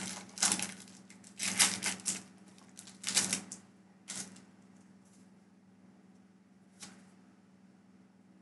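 A foil Pokémon booster pack wrapper crinkling as it is torn open, in several short bursts over the first three and a half seconds. Two brief single rustles follow, at about four seconds and near seven seconds.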